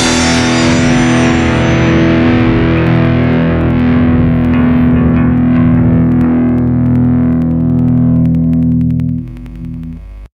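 A distorted electric guitar chord left ringing out at the end of a hardcore-punk song after the band stops. The high end slowly dies away, the level drops near the end, and the sound cuts off abruptly.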